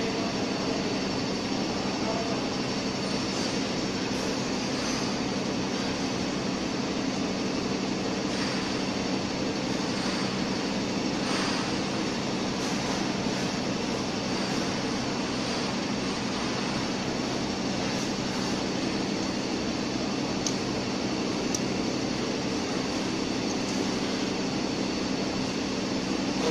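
Steady drone of running workshop machinery, unchanging throughout, with a few faint clicks of wire ends being twisted together by hand.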